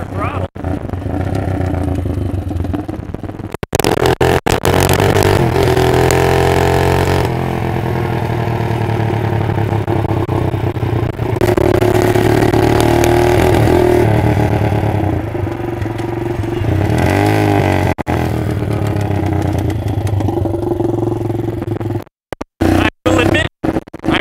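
Lifan 163FML 200cc single-cylinder four-stroke engine in a Doodlebug minibike, revving up and easing off several times as the bike is ridden; the owner thinks it runs lean under load. Near the end the sound cuts out briefly several times.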